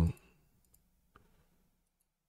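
Two faint computer mouse clicks about a second in, against near silence.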